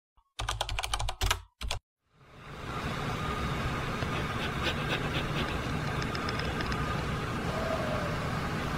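Handling noise from a close microphone: a quick cluster of clicks and knocks in the first two seconds. Then a steady low hum of room noise with a few faint taps.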